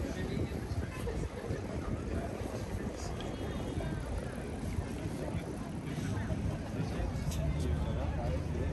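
Busy city street ambience: a steady rumble of traffic with people talking indistinctly nearby.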